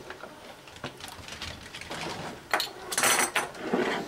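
A bottle opener prying the crown cap off a glass beer bottle: small metal clicks and scrapes, with a louder clatter about three seconds in as the cap comes off.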